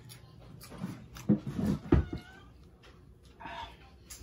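Short animal calls, one about two seconds in and a shorter one near the end, along with a couple of sharp knocks.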